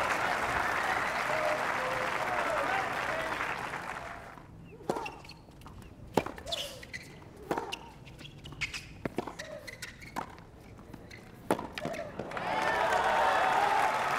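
Crowd applause fading out, then a tennis rally: sharp racket strikes on the ball about every second and a half. Applause rises again near the end as the point is won.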